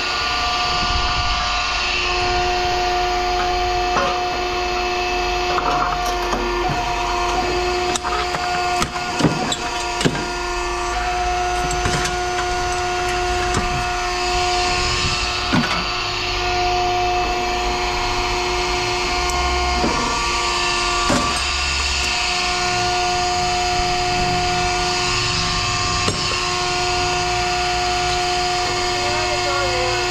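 Scrap metal being handled and sorted by hand: scattered knocks and clanks over a steady machine hum.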